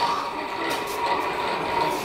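Large whipped spinning top spinning on stone paving, giving a steady, even hum.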